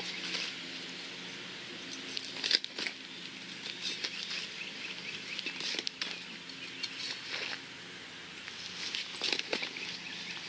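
Small hand digging shovel's blade cutting into dry grass turf, a handful of separate crunching, tearing strokes as the plug is cut out around a target.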